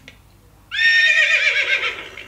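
A horse whinny sound effect: one quavering, high-pitched neigh of about a second, starting a little under a second in.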